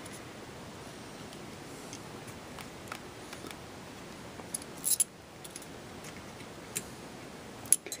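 A few scattered small metallic clicks and ticks as a tool and spring-wire pin retainer are worked against the steel receiver and trigger-group parts of a Saiga 12, with the loudest pair of clicks about five seconds in.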